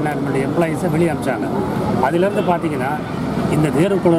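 A man speaking steadily in Tamil, one voice talking without pause.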